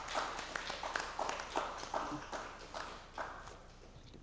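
Applause from a small audience, individual hand claps distinct and irregular, dying down near the end.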